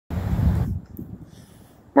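A low rumble on the microphone for about half a second, then faint outdoor background noise.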